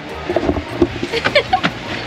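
Golf cart running with a steady low hum, with a few light clicks and knocks from the cart and faint voices in the background.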